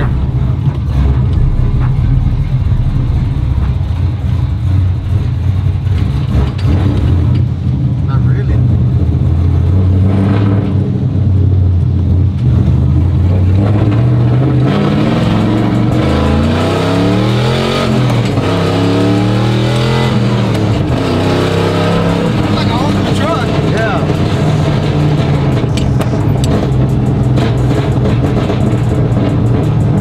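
Chevy cateye pickup's engine heard from inside the cab while it is driven through a sequential T56-style manual gearbox. For the middle stretch the engine note climbs and drops again and again as it pulls and shifts, then settles to a steady cruise. It is running better but still sounds a little funny.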